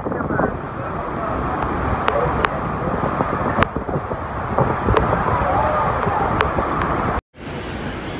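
Steady roar of Horseshoe Falls' plunging water mixed with wind on the microphone, with faint voices and a few sharp ticks through it. About seven seconds in the sound drops out for an instant at a cut and comes back as a quieter, even rush.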